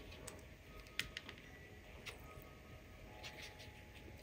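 Faint dabbing of a water brush on wet watercolour paper: a few soft ticks, the clearest about a second in, over low room tone.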